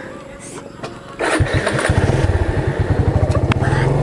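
Motorcycle engine starting about a second in, then running with a rapid, even beat.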